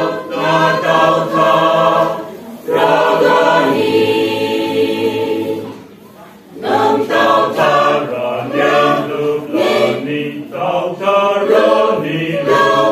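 A choir singing a hymn in harmony: several sung phrases, a long held chord in the middle, a brief breath-pause about six seconds in, then the singing picks up again.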